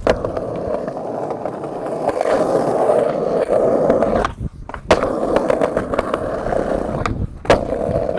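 Skateboard wheels rolling loudly over stone paving. The rolling drops out briefly twice, each time followed by a sharp clack of the board, once near the middle and again toward the end.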